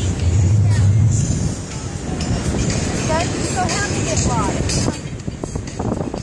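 Wind buffeting the phone's microphone, heaviest as a low rumble in the first second and a half. Around the middle comes a quick series of five or six short high chirping calls.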